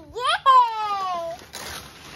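A young child's high, drawn-out cheer of "yay", falling in pitch, followed near the end by a short papery rustle of wrapping paper being handled.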